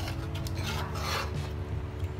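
Metal ladle scraping against the inside of an aluminium pot of noodle soup while scooping. There is one longer rasping scrape about a second in.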